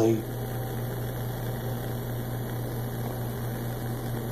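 Steady low hum with a faint even hiss, with no distinct knocks or splashes.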